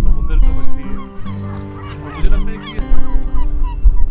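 A flock of gulls calling over and over as they circle over fish scraps thrown into the water, over background music with held notes.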